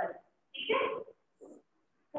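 A woman's voice speaking Hindi in short, broken fragments, with a single short syllable about half a second in. The pauses between fragments drop to dead silence.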